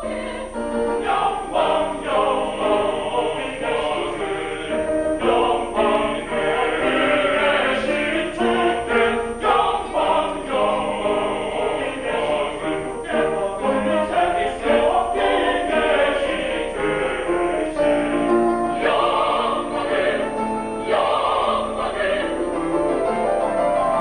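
Mixed choir of men's and women's voices singing a sacred choral piece.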